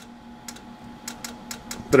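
A series of light, irregular clicks as a steel test bar is handled in a roller transducer holder, over a steady low hum.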